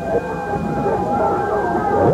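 Wrestling ring bell ringing continuously over loud crowd noise, signalling a disqualification. A steady ringing tone starts right away, its highest part fading a little past halfway.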